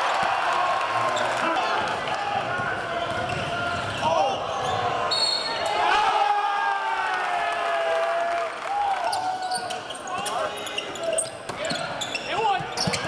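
Basketball game sound in a gymnasium: many indistinct voices shouting and calling from the crowd and players, with the ball bouncing on the hardwood court and short sharp clicks and squeaks of play.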